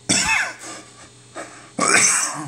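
A person coughing twice: one short cough right at the start and a second near the end.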